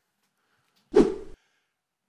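A single short whoosh sound effect about a second in, the kind used as an editing transition between scenes, with dead silence on either side.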